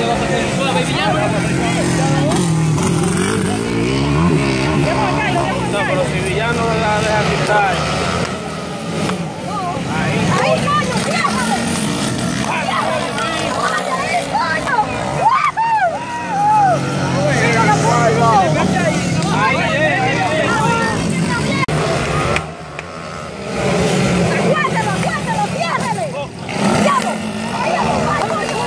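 Several motocross dirt bikes racing past, their engines revving up and falling back again and again as the riders work through the gears around the track.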